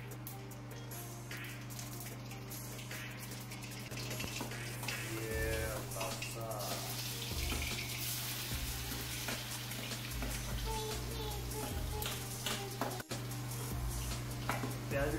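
Chopped garlic and onion sizzling in hot oil in a stainless-steel kadai on a gas burner, the frying hiss growing louder from about four seconds in, under background music.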